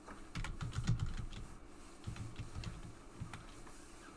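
Computer keyboard being typed on in irregular bursts of keystrokes, the busiest run about half a second to a second in and another around two to three seconds in.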